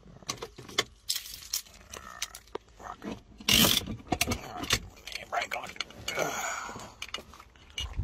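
Keys jangling and clicking at a car's ignition, amid a run of short handling knocks and rattles, with a louder rustling burst about three and a half seconds in.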